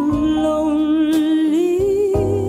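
A young female vocalist singing one long held note with vibrato over an instrumental accompaniment, the pitch stepping up near the end.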